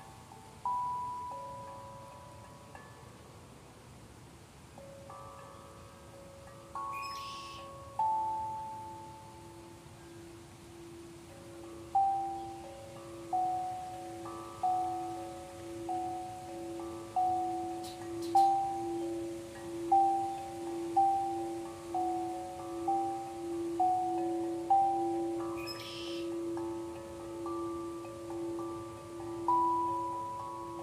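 Singing bowls struck with a wooden mallet, each strike ringing out and fading. A few slow strikes at first, then a steady run of about one strike a second at several pitches, over a low sustained bowl tone that pulses as it rings.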